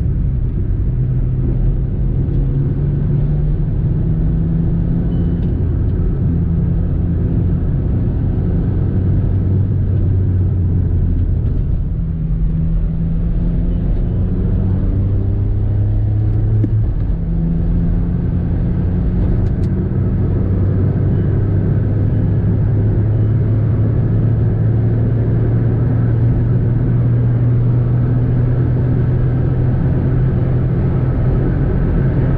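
Volkswagen car's engine and road noise heard from inside the cabin while driving: a steady drone whose pitch steps down and back up a few times as gears are changed, then holds and slowly rises.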